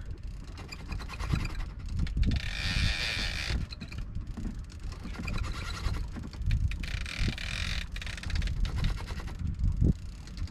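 Sailboat's inboard engine running slowly at low revs, a steady low rumble, with wind on the microphone; a higher hiss rises and falls twice, about two and seven seconds in.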